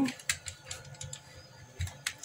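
Light clicks and rattles of a power plug and cables being handled and fitted into an open set-top box, with a soft low bump near the end.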